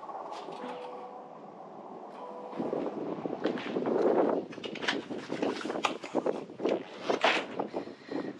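Pickup truck tailgate being lowered, with a steady faint hum for the first two and a half seconds, then gusting wind on the microphone and scattered knocks of handling.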